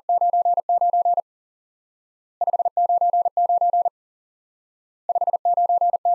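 Morse code for "599" keyed as a pure tone of about 700 Hz at 40 words per minute and sent three times, with about a second of silence between repeats. Each group starts with a quick run of five short dits, the 5, followed by the longer dahs of the two 9s.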